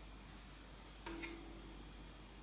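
A quick metal clink about a second in, the ladle knocking against a stainless steel jam funnel, which rings briefly with one steady tone; faint room hiss otherwise.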